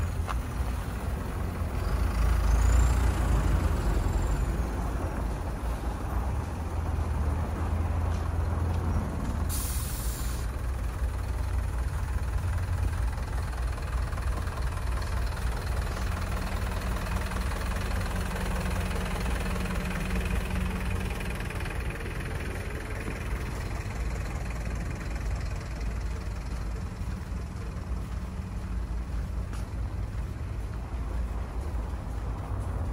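Street traffic dominated by the steady low rumble of a truck engine. A high squeal rises and falls near the start, and a short sharp hiss comes about a third of the way in.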